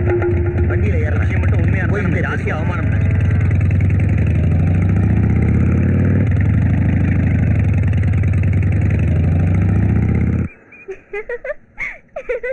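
Motorcycle engine running steadily as the bike is ridden off, cutting off abruptly near the end.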